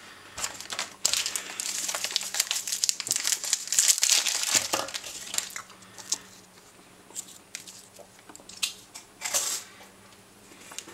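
Crinkly plastic wrapper of a Napoli milk-hazelnut wafer bar crinkling and tearing as it is opened by hand, densest and loudest from about one to five seconds in. After that come scattered lighter crinkles and a short louder rustle near the end.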